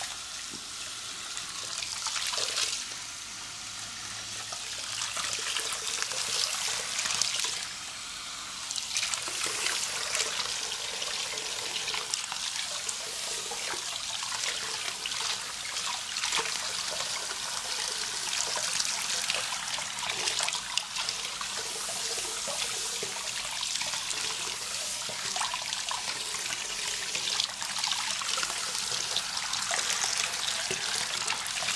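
Water from a pull-out sink sprayer running over a shaved scalp and splashing into a shampoo basin: a steady spray with small irregular splashes. It drops in level for a moment twice in the first ten seconds.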